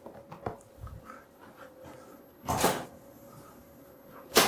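Quiet room with light handling noises: a few soft clicks, then one short rustling swish about two and a half seconds in.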